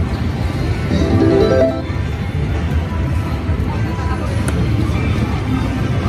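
Wonder 4 Boost Gold video slot machine playing its electronic game music and spin sounds, with a short rising run of tones about a second in, over the steady din of a casino floor.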